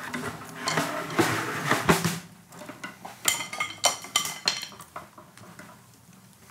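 Small plastic anatomical skeleton model being handled, its loose bones and joints clicking and rattling as its arm is turned at the shoulder, with a few brighter clinks about halfway through.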